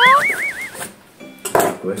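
A person's voice exclaiming a drawn-out "oh" that slides up into a high, warbling squeal, fading out within the first second, followed by a short pause and the start of speech.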